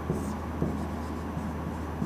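Marker pen writing on a whiteboard: a few faint, short strokes over a steady low hum.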